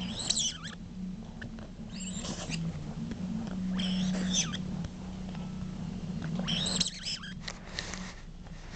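Miniature dachshund giving short, high-pitched squeaky whines, four brief bursts, while playing with a rubber ball, over a steady low hum.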